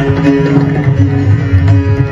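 Sitar playing a Hindustani raga, a run of plucked notes ringing over its drone strings, accompanied by two tabla with steady low drum strokes.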